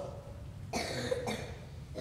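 A person coughing once, faint and short, a little under a second in, in a quiet pause between spoken lines.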